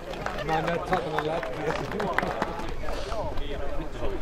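Footsteps on packed snow, a quick series of short steps, with people talking in the background.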